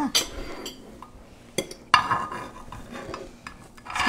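Metal spoon scraping and scooping through a baking dish of hash-brown casserole, with a sharp click about one and a half seconds in and a louder scrape just after it.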